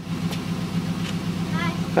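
A vehicle engine idling steadily close by, a low even hum.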